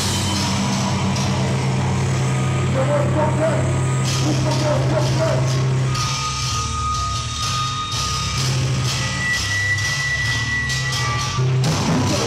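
Live heavy hardcore band playing through distorted guitars and bass: a held low, heavy note for about six seconds, then drums come in with steady, evenly spaced hits as a slow breakdown. A couple of thin, high ringing tones sit over it in the second half.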